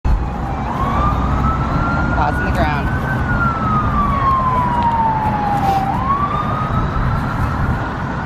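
Emergency-vehicle siren on a slow wail: its pitch rises about a second in, holds, falls slowly for about three seconds, then starts rising again, over a steady low rumble.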